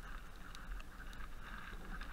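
Mountain bike riding down a snowy trail, heard from a helmet camera: a steady low wind rumble on the microphone, with continuous tyre and riding noise and scattered small rattles.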